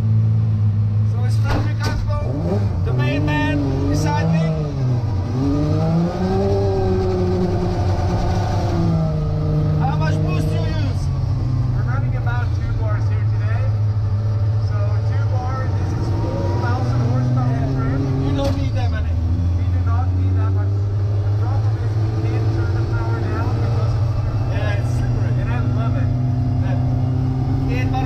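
Toyota 2JZ inline-six engine in a GT86 drift car, heard from inside the cabin, revving up and down hard as the car is driven. The engine note rises and falls repeatedly over the first ten seconds or so, then runs steadier with stepped changes in pitch.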